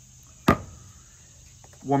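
A single sharp knock about half a second in: a metal can of pinto beans set down on the cutting board.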